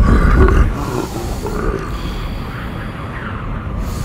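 A deep growl from a red horned monster, loud for the first second and then dropping to quieter snarling.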